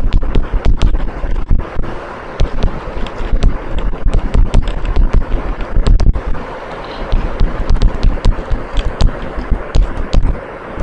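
Writing during a lecture pause: irregular sharp taps and scratches over a steady low rumble and hiss.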